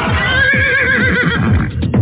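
A horse whinnying in one long, quavering call, over music with a fast drumbeat of about four strokes a second.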